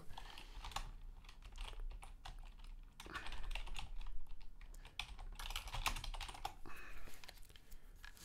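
Typing on a computer keyboard: an irregular run of quick key clicks, busiest in the middle, as a search phrase is entered.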